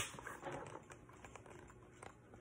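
Pages of a picture book being turned and handled: a sharp paper flick right at the start, then faint small clicks and rustles of paper.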